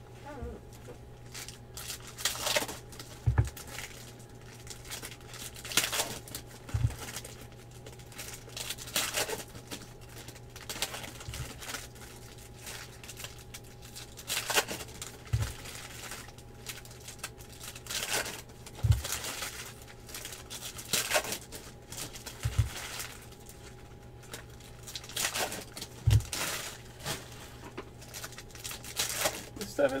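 2016 Panini Optic football card packs being torn open and the cards handled: repeated crinkling and tearing of the foil wrappers, with a soft knock on the table about every three to four seconds as cards or packs are set down. A steady low electrical hum runs underneath.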